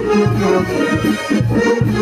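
Live band dance music: sustained melody notes over a bass line pulsing about twice a second.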